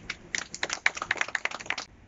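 A few people clapping briefly: a quick, irregular run of sharp claps that stops abruptly near the end.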